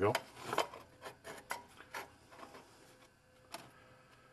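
Light clicks and scrapes of a metal camp stove and a small Sterno can being handled and settled in place, several in the first two seconds and one more about three and a half seconds in.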